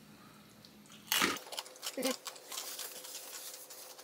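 A crunchy bite into a baked tortilla-chip nacho about a second in, then faint crisp chewing with many small crackles. A short closed-mouth 'mm' comes near two seconds.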